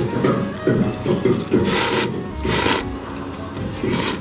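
Thick soba noodles slurped from a bowl of hot broth: two long airy sucks, each about half a second, a little under a second apart.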